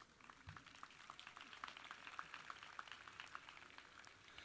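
Faint, scattered applause from an audience, many quick claps that start together and thicken over the first couple of seconds.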